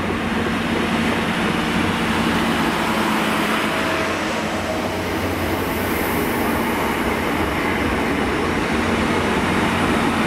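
Transport for Wales diesel multiple unit pulling in alongside the platform, its underfloor diesel engines giving a steady drone over the rumble of the wheels on the rails.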